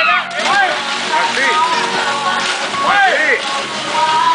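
Girls jumping feet-first into a swimming pool: a splash just after the start, then churning, sloshing water, with high girls' voices calling and squealing over it.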